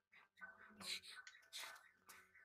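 Very faint, whispery voices, near silence.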